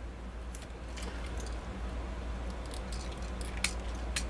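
Plastic parts of a Siege Megatron Transformers figure being handled and clicked into place: scattered small clicks and rattles, with one sharper click about three and a half seconds in.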